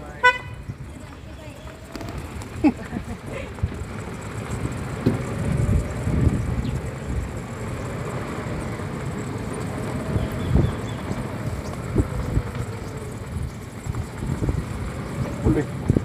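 A vehicle driving over an unpaved road: a steady low rumble with frequent bumps and thumps from the rough surface. A short, high horn toot sounds right at the start.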